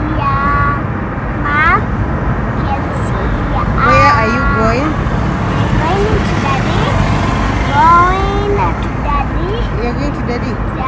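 A young child's high voice talking in short phrases inside a car, over the steady low rumble of the car's cabin noise.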